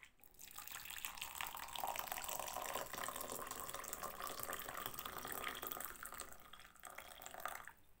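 Water poured in a steady stream from a flask into a mug over a tea bag, starting just after the beginning and stopping near the end.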